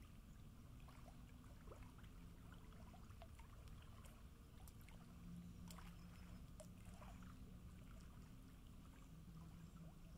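Near silence: faint lapping of small waves at a lake shore, scattered soft splashes over a low steady rumble.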